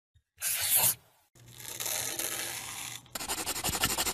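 Crayon scribbling on paper: fast, even scratchy strokes, about ten a second, starting about three seconds in. Before it there is a short loud burst of tearing-like noise, then a softer steady rubbing.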